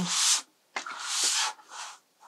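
Painting board with watercolour paper taped to it sliding and scraping across the tabletop as it is turned, in three short rubs.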